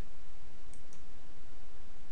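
A computer mouse clicking twice in quick succession, about three-quarters of a second in, as a text colour is picked from a menu, over a steady background hiss from the recording.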